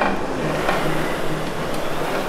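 Concept2 SkiErg air-resistance flywheel whirring steadily as the handles are pulled.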